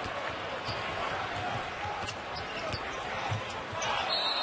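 Basketball dribbled on a hardwood court, a few low bounces, over steady arena crowd noise.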